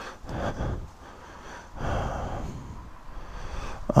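A man breathing heavily close to the microphone, two long breaths about a second and a half apart, with faint crackling of dry leaves underfoot as he walks down a steep bank.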